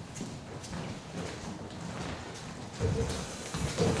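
Footsteps and knocks of stools being moved and set down on a stage floor, scattered at first, with louder thuds and a short scrape near the end.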